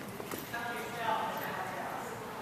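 Indistinct voices in a large echoing gym hall, with a few light taps near the start.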